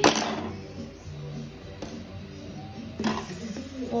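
Scissors cutting a strand of yarn at the start, then soft rustling of yarn and paper with a few light clicks of the scissors.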